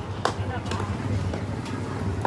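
People talking in short bursts over a steady low rumble, with a sharp click about a quarter of a second in.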